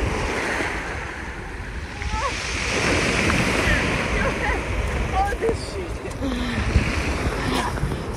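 Sea surf washing and breaking on a pebble shore close to the microphone, in uneven surges, with wind buffeting the microphone.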